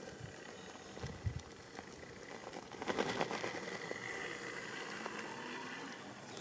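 An RC scale crawler's electric motor and gear drivetrain whining steadily as it climbs a rock slab, with a few clicks and the tyres scrabbling on the rock. It gets louder from about halfway, as the motor works harder.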